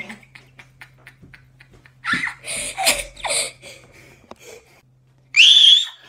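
A girl's laughter in a few bursts about two to three and a half seconds in, after some faint clicks. Near the end comes a short, loud, high-pitched squeal.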